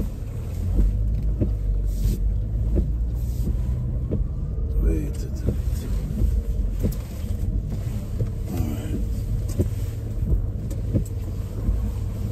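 Car moving slowly while being parked in a tight spot, heard from inside the cabin: a steady low engine and road rumble, with light clicks repeating about every 0.7 s.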